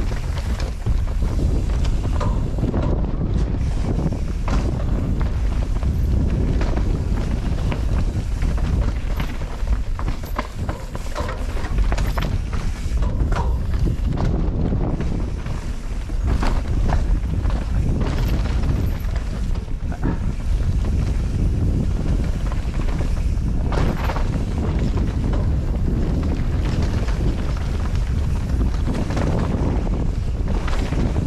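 Mountain bike descending a rough dirt singletrack at speed: wind rushing over the action-camera microphone as a steady rumble, with tyres on dirt and rock and the bike rattling and knocking over roots and rocks.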